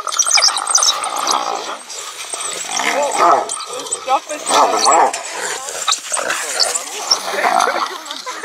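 A pack of African wild dogs giving rapid high twittering and chattering calls while mobbing a cornered spotted hyena, which answers with loud yelping cries and growls; many overlapping calls rising and falling in pitch, loudest bursts about three and five seconds in.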